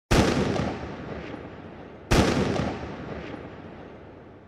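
Two loud cinematic impact hits, about two seconds apart, each with a long echoing tail that fades away.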